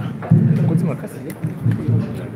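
Indistinct talking close to the microphone, loud and low-pitched, starting a moment in.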